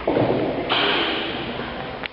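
Spherical neodymium magnet rolling down a tilted tube lined with aluminium and plastic channels. The rolling rumble starts suddenly, and about two-thirds of a second in a higher, brighter hiss joins it.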